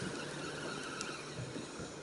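Faint, steady background noise aboard a small boat at sea, with a single light click about a second in.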